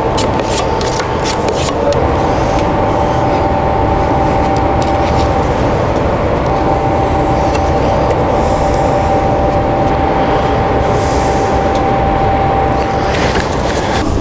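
A machine running steadily: an even rushing noise with a constant whine over it.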